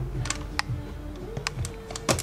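About half a dozen sharp, light clicks at irregular intervals from a hand handling a TomTom GO 750 GPS unit's plastic casing.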